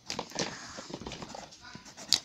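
Pencil scratching on paper in short, irregular strokes as letters are handwritten.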